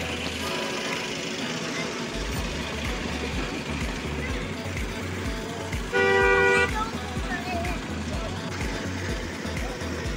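A vehicle horn sounds once, a single steady blast lasting under a second about six seconds in, over background music with a steady beat and street noise.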